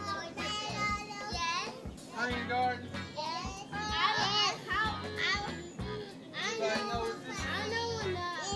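A group of children's voices chattering and calling out over one another, with music playing underneath.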